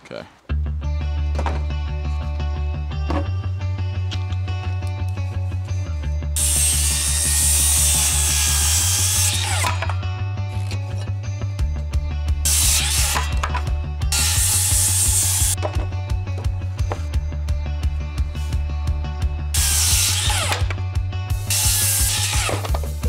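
Background music with a steady bass line, over which a circular saw cuts through two-by-six boards for stair treads four times: a long cut about six seconds in, two shorter cuts in quick succession around the middle, and one more near the end.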